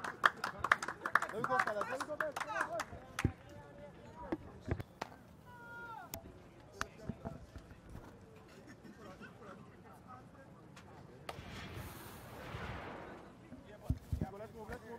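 Cricket-ground ambience picked up by the broadcast: indistinct voices and scattered hand claps in the first few seconds, then a low background murmur. A brief swell of noise rises and fades near the end.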